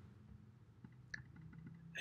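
Near silence: room tone with a few faint computer-mouse clicks a little after a second in.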